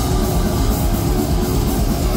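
Death metal band playing live at full volume: heavily distorted electric guitars over fast, evenly repeated drum and cymbal hits, heard from within the crowd.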